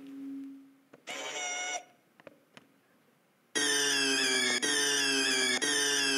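Electronic sound effects played through the speaker of a homemade robot costume, set off one after another by button presses: a brief low hum, a short clip about a second in, then from about three and a half seconds a longer pitched sound that cuts off and restarts twice.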